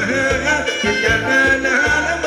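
Thai ramwong dance music from a live band, loud, with a gliding lead melody over a steady pulsing bass beat.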